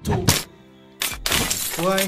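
Glass-shattering sound effect for an editing transition: a short sharp crack at the start, then about a second in a longer crash of breaking glass.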